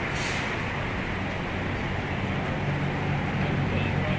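City street traffic: engines of cars idling in a queue at an intersection, a steady low hum under general road noise, with a short hiss just after the start. The engine hum grows louder near the end.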